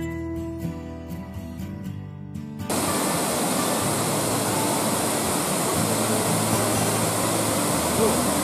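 Acoustic guitar music for the first third, cut off suddenly, then a small mountain stream cascading over rocks, a steady rush of falling water.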